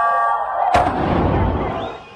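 A single loud explosive bang about three-quarters of a second in, its noise dying away over about a second.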